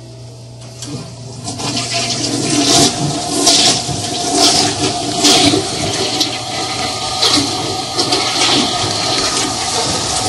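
Toilet flushing: a loud rush of water begins about a second in and keeps going, surging unevenly.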